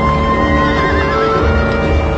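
A horse whinnies once, a wavering call that falls in pitch about half a second in, over loud background music.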